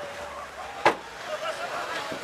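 A car spinning its tyres in a burnout, engine driven hard, with a single sharp crack about a second in over background chatter.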